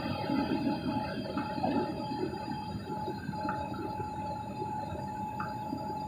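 Jet airliner cabin noise heard from a window seat: a steady engine drone and rush of air with a few faint steady whining tones.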